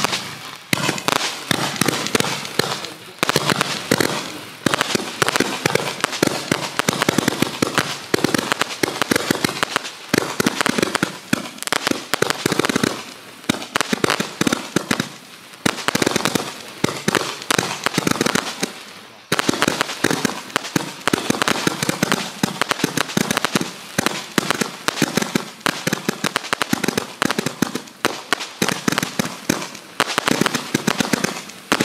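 Miracle Fireworks Minigun Blaster, a 200-shot roman candle barrage, firing in rapid succession: a dense stream of pops with a few brief lulls.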